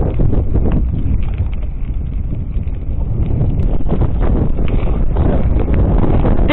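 Heavy wind rumble on the microphone of a camera riding along on a moving mountain bike, with scattered rattles and clicks from the bike running over the road surface.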